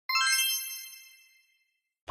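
A short bright chime on the channel's logo card: a few bell-like notes struck in quick succession, ringing and fading out within about a second.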